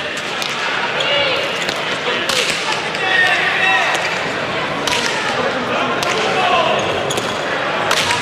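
Leather hand-pelota ball struck bare-handed and hitting the frontón's walls and floor during a rally: a series of sharp smacks a second or more apart, over crowd voices and shouts.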